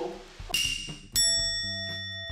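Editing sound effects: a short swish about half a second in, then a bright bell-like ding just over a second in that rings on and fades slowly.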